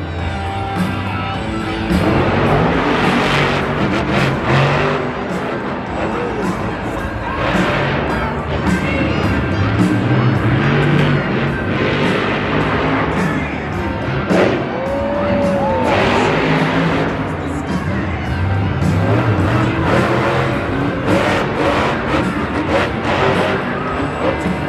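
Monster truck engine running hard in a stadium, revving up and easing off repeatedly. Stadium PA music plays underneath.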